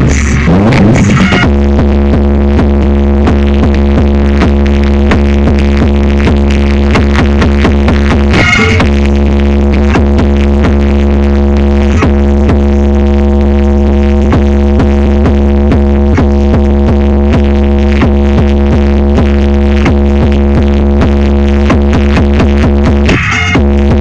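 Electronic dance music played very loud through the Chumbo Grosso truck's wall of car-audio speakers, built by Atrasom, with a heavy, steady bass. The track briefly breaks about eight seconds in.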